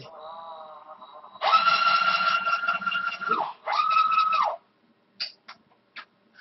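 Cordless drill motor whining. It starts with a softer run whose pitch wavers, then runs at a loud, steady high whine for about two seconds, spinning up and winding down at the ends. A second, shorter burst follows about a second later.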